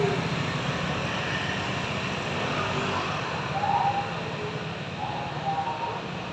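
Street traffic noise: a steady low hum of motorbike engines and road noise, with a few faint short higher-pitched sounds about halfway through and near the end.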